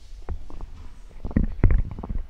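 Microphone handling noise: a table microphone being moved on the desk, heard as low rumbling and a string of knocks, the loudest about a second and a half in.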